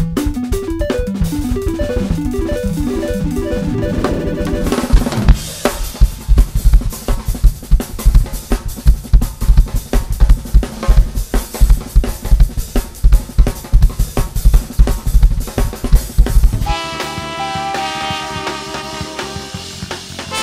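Drum kit played live in three passages. First, about five seconds of drumming under a descending run of pitched notes. Then a dense, hard-hitting stretch of kick, snare and cymbals, and about seventeen seconds in, lighter drumming with pitched accompaniment.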